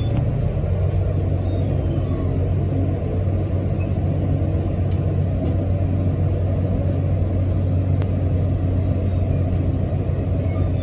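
Articulated city bus heard from inside at the bendy joint: a steady low engine drone and rumble. Over it come faint high-pitched squeals that slide in pitch, and a few sharp clicks about halfway through, the noises of the articulation section.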